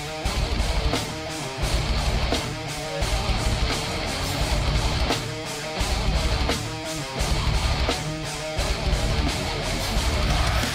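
Heavy metal breakdown: distorted electric guitar chugs locked with kick drums in a stop-start rhythm, with short higher guitar notes ringing in the gaps.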